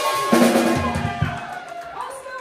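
Live band ending on a big accent: the drum kit is struck with cymbal crashes and bass drum about a third of a second in, then the chord and cymbals ring out and fade away.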